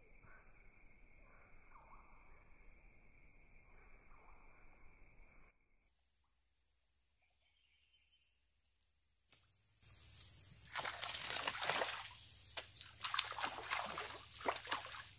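A hooked snakehead thrashing at the surface after taking a soft frog lure: loud, churning water splashes in quick bursts that start about ten seconds in. Before that it is faint, with only a steady high tone.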